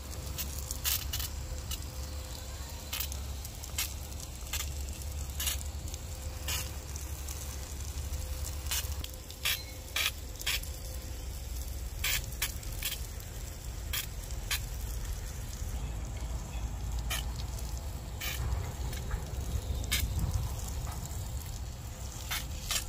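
Water from a garden hose spraying and pattering onto leafy plants and soil, a steady hiss with a low rumble beneath it. Sharp clicks come at irregular moments all through it.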